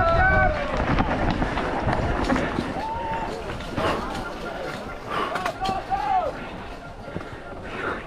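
Spectators shouting and cheering as a mountain bike races past, loudest at the start, with more shouts around three and six seconds in. Underneath is a constant rush of wind and tyre noise on a chest-mounted camera, with the bike rattling over the rough dirt trail.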